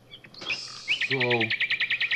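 A small bird trilling: one rising chirp a little before a second in, then a fast, even run of short high chirps, about a dozen a second.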